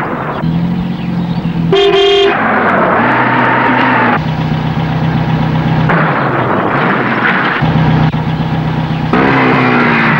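A single short car horn honk about two seconds in, over the steady drone of vehicle engines.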